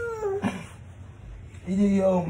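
A short, high-pitched, drawn-out vocal cry that slowly falls in pitch, over in about half a second.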